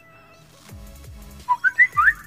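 A phone message alert: a quick run of short rising chirps, about four notes climbing, near the end, as a WhatsApp message goes through, over faint background music.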